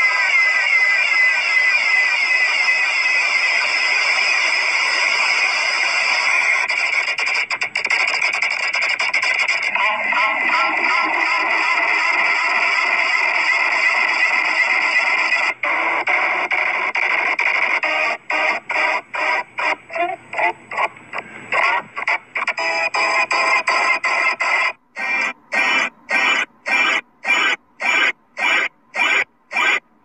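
Heavily distorted, pitch-shifted and layered logo audio run through stacked 'G Major' effects: a harsh, squealing wash of sound. From a little past halfway it cuts on and off in rapid stutters, roughly twice a second.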